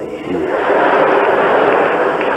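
Live audience laughing and applauding, a loud, dense wash that swells up about half a second in and holds steady.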